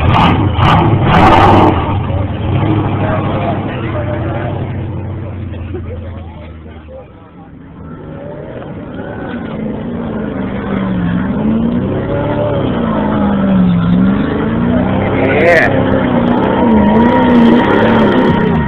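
Lifted Chevy K5 Blazer's engine running hard through a mud pit, with a few sharp cracks in the first two seconds, then fading away around seven seconds in. Another mud truck's engine follows, its revs rising and falling over and over and getting louder.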